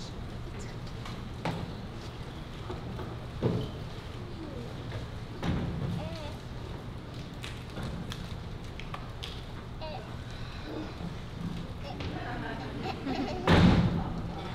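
Scattered thumps of people moving on a theatre stage during a scene change, with a few soft knocks early on and the loudest thump near the end, over the low hum of the hall and faint murmur.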